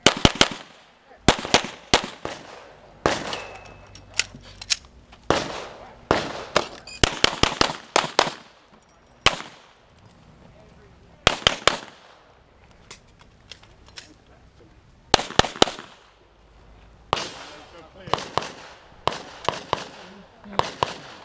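Pistol shots in quick pairs and short rapid strings, repeated many times. Some shots are sharp and loud, others fainter.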